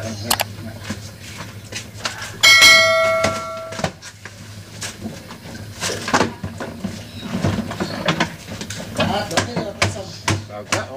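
A click near the start, then a subscribe-animation notification bell sound effect about two and a half seconds in: one bright chime of several tones that rings and fades out over about a second. Scattered voices and a steady low hum sit under it.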